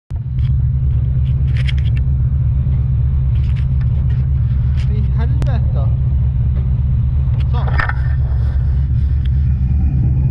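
A rescue boat's engine running steadily, a deep continuous rumble.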